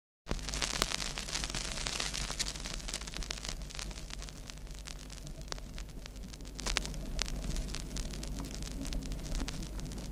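Vinyl record surface noise from a stylus riding the groove before any music: dense crackle and pops over a steady hiss and a low rumble. It starts a moment in.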